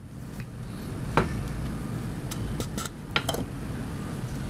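Small tools and hard objects clicking and clinking as they are handled on a soldering workbench: one sharp click about a second in, then a run of lighter clicks, over a steady low hum.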